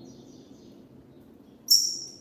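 Double-collared seedeater (coleiro) singing: a faint high whistled note at the start, then a loud, sharp, high note near the end that trails off, over a steady low background hum.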